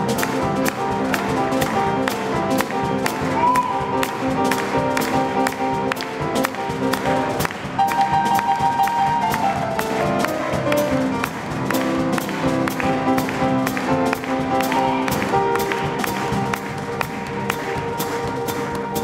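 Live jazz band playing: a drum kit keeps a steady beat of cymbal ticks under held horn and piano notes. About eight seconds in, one held note slides down in pitch.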